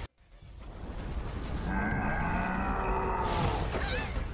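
Anime soundtrack audio: a sudden drop to silence, then sound swells back in, and a drawn-out, low groaning cry is held for about a second and a half.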